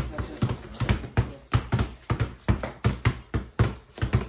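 Two basketballs being dribbled hard and fast on a bare concrete floor: a quick, uneven run of bounces, about four a second.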